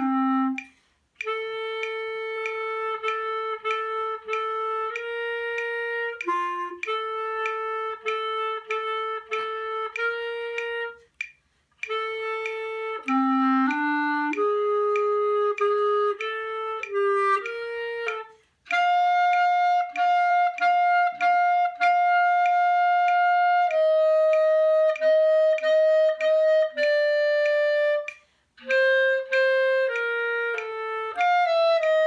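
Solo clarinet playing a classical piece, phrase by phrase with short breath pauses, many of the notes articulated as quick repeats; the later phrases sit higher in pitch.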